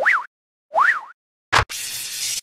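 Cartoon-style sound effects for an animated logo sting: two short springy tones that glide up and down, about a second apart, then a sharp hit with a low thump followed by a hissing burst near the end.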